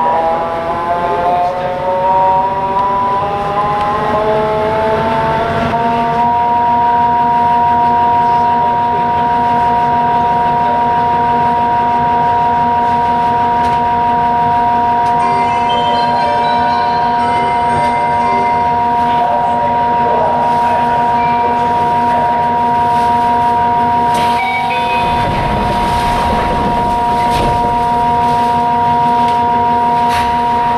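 Mitsubishi GTO-VVVF inverter traction drive of a Yokohama subway 3000A train whining under way: several tones rise together in pitch for about six seconds as the train picks up speed, then hold at a steady pitch over the train's running noise. A deeper rumble swells for a few seconds near the end.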